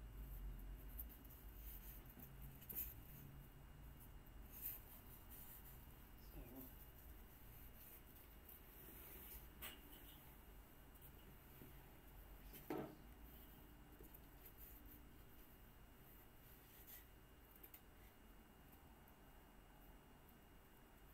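Near silence: faint room tone with a few soft, scattered clicks and knocks from handling at the workbench.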